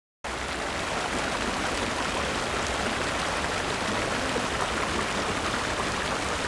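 Shallow water flowing along a tiled channel of a park water feature and spilling over its edge: a steady, even rush of running water.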